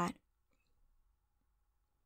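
A woman's voice finishing a softly spoken word right at the start, then near silence.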